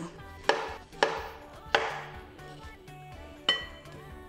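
Kitchen knife chopping through ripe plantain onto a wooden cutting board: four sharp knocks over the first three and a half seconds, with background music playing throughout.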